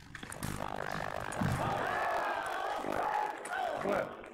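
Several voices calling out in a large hall, with drawn-out, wavering, overlapping shouts from about half a second in until the end.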